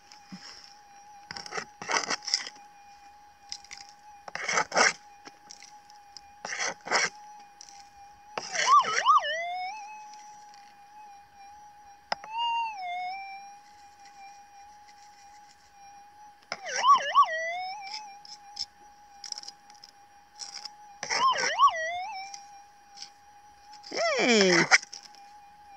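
Minelab SDC 2300 gold detector's steady threshold tone, warbling up and down four times as soil is passed over the coil: the detector's response to a gold nugget in the dirt. Short gritty rattles of soil being scooped and crumbled come in between.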